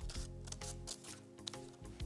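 Scissors snipping through folded paper in a few short cuts, over steady background music.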